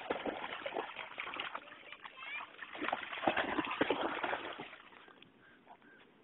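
Splashing and sloshing in water, as a dog and a child play in it, busiest about three seconds in and dying away near the end.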